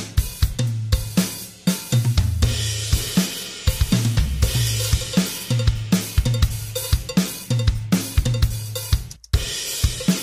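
Logic Pro X Drummer playing a SoCal rock kit groove of kick, snare, hi-hat and cymbals through the Note Repeater MIDI effect, which adds repeated hits spread across multiple notes up and down the kit. The sound cuts out briefly near the end, then the beat resumes.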